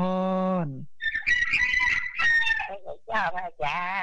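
A rooster crowing once, about a second in, one call lasting nearly two seconds. A man's drawn-out spoken word comes just before it, and speech resumes near the end.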